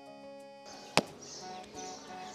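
Soft background music that stops early on, followed by faint outdoor ambience. A single sharp click or knock about a second in is the loudest sound, with faint, short, evenly repeated high notes after it.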